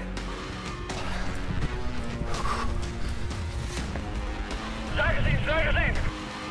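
Background music, with a loud, quickly wavering voice breaking in over it near the end.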